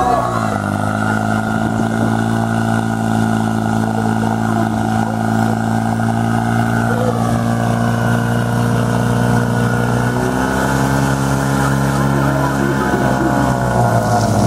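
Portable fire pump engine running at high revs, holding a steady pitch as it drives water through the attack hoses during a firefighting-sport attack. The pitch dips slightly about seven seconds in.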